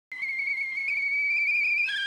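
Stovetop whistling kettle whistling at the boil: one steady, high note that creeps slightly upward, then drops suddenly to a lower pitch near the end.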